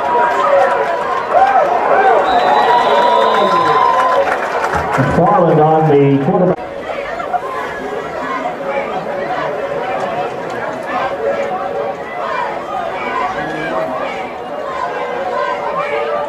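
Spectators in football stadium stands chattering, many voices overlapping, with one loud nearby voice about five seconds in and a steady tone over the first few seconds.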